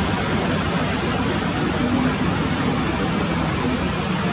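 Steady background noise at an outdoor baseball field: an even rush, heaviest in the low range, with faint indistinct voices and no distinct hit or call.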